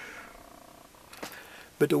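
A quiet pause between a man's spoken words, with only faint room noise and a faint hum; his speech resumes near the end.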